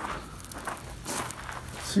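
Footsteps on a gravel path: faint, irregular steps with light scuffs and handling noise on the microphone.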